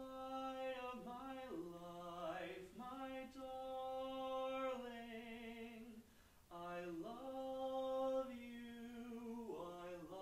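A man singing a short phrase of a barbershop song alone and unaccompanied, in long held notes that slide between pitches, with a brief break about six seconds in: he is modelling where the breaks in the phrase should go.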